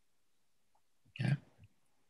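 Near silence apart from one brief spoken 'yeah' a little over a second in.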